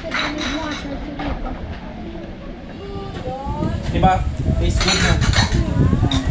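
Indistinct voices in a room, with dishes and cutlery clinking now and then.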